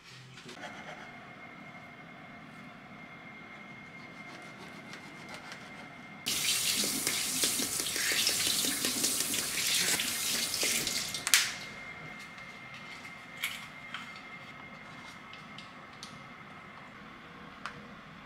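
Kitchen faucet running into the sink for about five seconds: the rush of water starts abruptly and stops with a click as the lever is shut. A few small clicks and knocks follow.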